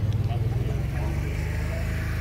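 An engine running steadily close by, a loud low drone with a fast even pulse, under faint voices.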